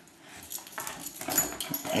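Hungarian vizsla puppy whimpering softly, with scattered light clicks.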